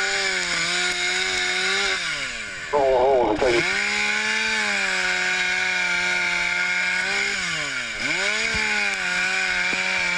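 Gas-powered saw running at high speed, its engine pitch sagging and then climbing back twice, about two seconds in and again near eight seconds, as the saw is loaded or the throttle is eased.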